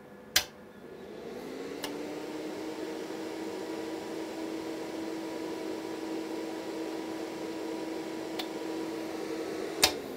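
A 4-transistor CB linear amplifier keyed up on the bench: a sharp click as it keys, then a steady hum that rises in pitch over the first second and holds level for about eight seconds, and a second click near the end as it unkeys, after which the hum winds down in pitch.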